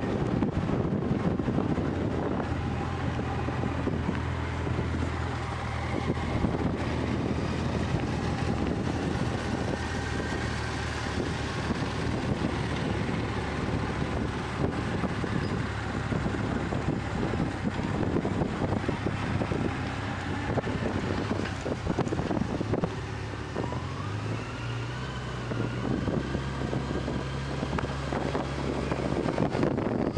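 Motor vehicle engine running steadily at low road speed, its pitch stepping up about three quarters of the way through, with wind rumbling on the microphone.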